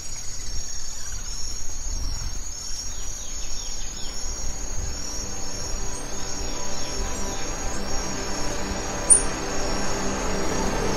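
Steady high-pitched insect chorus with a pulsing trill, a few short bird chirps (one louder near the end), over faint background music.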